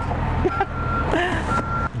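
A vehicle's reversing alarm beeping: a steady single-pitched beep about half a second long, repeating about once a second, over a low steady rumble of engines.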